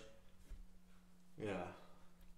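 A man says "yeah" once, about one and a half seconds in, over quiet room tone with a faint steady hum.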